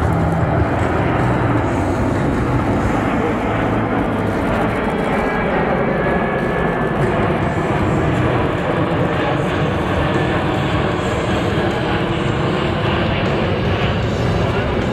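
The four Pratt & Whitney F117 turbofan engines of a Boeing C-17 Globemaster III make a loud, steady jet noise as the transport flies past low overhead.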